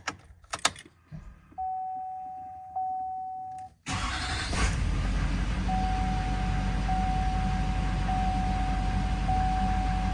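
Keys clicking in the ignition and a steady electronic dash chime, then the 2005 GMC Sierra's Duramax 6.6 L V8 turbo diesel starts suddenly about four seconds in and settles into a steady idle, with the chime repeating in short pulses over it.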